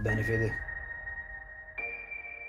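Film trailer score: long, held high electronic tones under the title card, with a new sustained chord coming in near the end.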